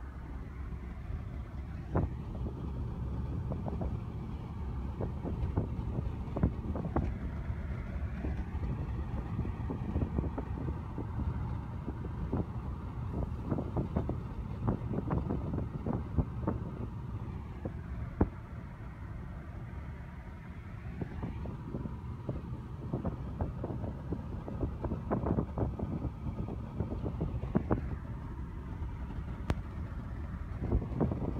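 Road noise inside a moving taxi: a steady low rumble of tyres and engine, with frequent short clicks and knocks.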